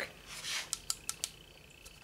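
A handful of light, sharp clicks from a metal flashlight's switch being worked, the flashlight failing to light because it is dead.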